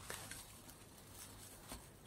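Faint crinkling and small crackles of cling film being handled and stretched back over a plastic cup of seed-starting soil.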